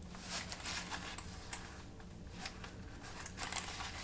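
Black fabric tool pouch being handled and turned over in the hands: faint rustling with a few light clicks.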